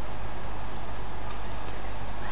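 Steady background hum of an indoor badminton hall, with a couple of faint racket strikes on the shuttlecock in a rally near the end.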